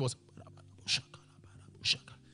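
A man's voice finishes a word, then two short hissing breaths into the microphone about a second apart, over a faint low hum.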